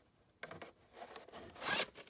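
Short scraping rustles of a VHS cassette and its cardboard sleeve being handled, the plastic and cardboard sliding against each other and the hand, starting a little way in.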